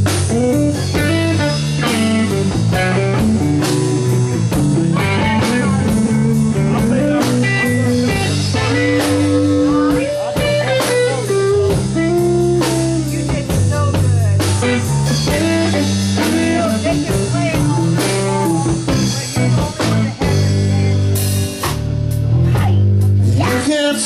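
Live blues-rock band playing an instrumental passage with no singing: electric guitar over bass and drum kit, loud and steady.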